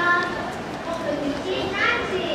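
Voices talking, children's voices among them.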